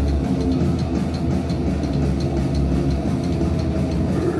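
A rock band playing live and loud, with heavy bass and drums keeping a fast, steady beat of about four hits a second, and electric guitar.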